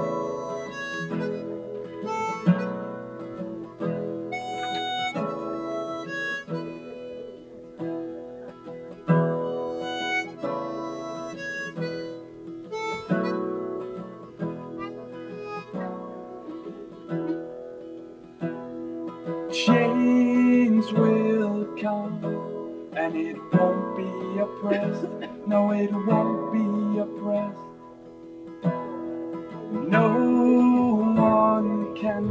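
Live harmonica playing a melody over strummed acoustic guitar chords, an instrumental break in a song. It grows a little louder about two-thirds of the way through.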